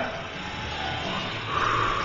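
Faint background music over steady room hum, with no voices.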